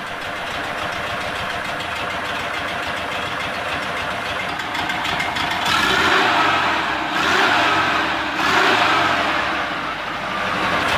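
VW bus air-cooled flat-four engine idling steadily, then blipped up three times from the carburettor throttle in the second half, each rev lasting about a second. It sounds normal when revved even though one exhaust valve is leaking, held slightly open by a broken valve adjuster, which the vacuum gauge shows as a steady twitch at idle.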